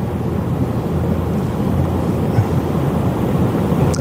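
Steady low rumbling background noise, with no speech, picked up by the lecturer's headset microphone in the hall.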